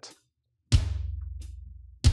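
Playback of a virtual drum kit (One Kit Wonder plugin): one loud drum hit with a cymbal crash about two-thirds of a second in, ringing out and slowly fading over a low sustained tone. A second hit lands right at the end.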